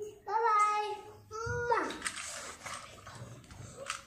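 A young boy's voice holding two long, sing-song "bye" calls in the first half, followed by a softer hiss with a few clicks.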